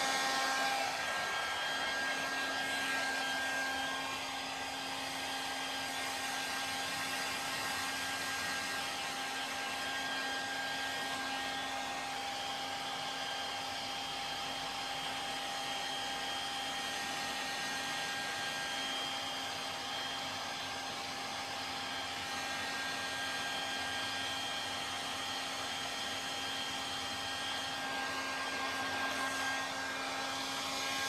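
Hand-held hair dryer running steadily on damp hair, a continuous blowing rush with a faint motor whine. It grows slightly quieter and louder again a few times as it is moved around the head.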